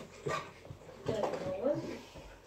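A dog barks once, briefly, about a quarter second in.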